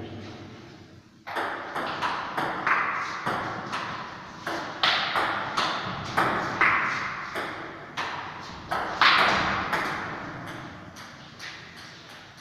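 Table tennis rally: the celluloid ball clicking off rackets and table at about two hits a second, each hit ringing briefly in the hall. It starts about a second in and runs until about nine seconds in, with the loudest hit near the end, then dies away.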